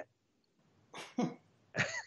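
A man's brief breathy vocal sounds: a short cough-like burst about a second in, a quick falling voiced sound right after, and another breath near the end, the start of laughter.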